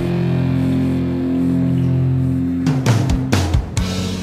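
Instrumental passage of a 1990s funk-metal rock song: a held guitar chord rings for the first couple of seconds, then a quick run of sharp hits comes in about three seconds in.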